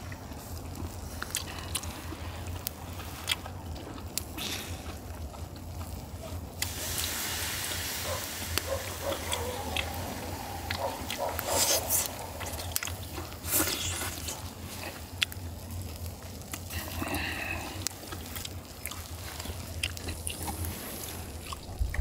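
A man eating charcoal-grilled clams close to the microphone: chewing and slurping, with a couple of louder slurps midway and scattered small clicks of chopsticks against shells.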